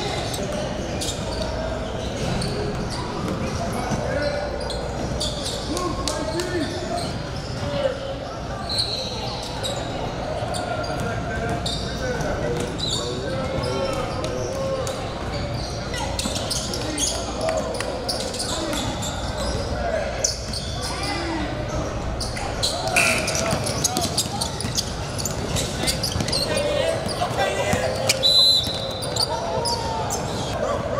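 Basketball dribbled on a hardwood gym floor, repeated sharp bounces echoing in a large hall, over the talk and shouts of players and spectators, with a couple of brief high squeaks that sound like sneakers on the court.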